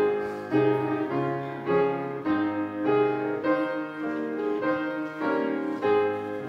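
Piano playing the introduction to a congregational hymn: full chords struck about every half second.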